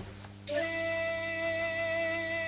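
Background music entering about half a second in: one long held chord that stays steady.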